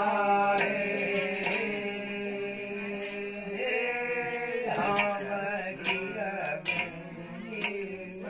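A male voice chanting a Kumaoni jagar, a sung devotional ballad, over a steady low drone, with sharp irregular strikes about once a second.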